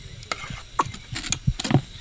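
Irregular short scrapes and knocks of a cooking pot being handled, with no steady rhythm.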